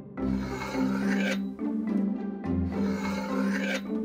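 Butter knife blade drawn down through kinetic sand, a grainy rasping scrape, in two long strokes.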